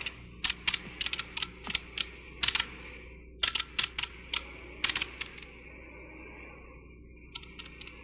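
Computer terminal keyboard being typed on: quick, irregular keystrokes for about five seconds, then a short pause and a few more keys near the end, entering a command at the terminal.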